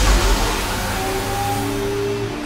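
Dark cinematic soundtrack: a loud, dense rush of noise over a low drone, with a few long held tones coming in about a second in.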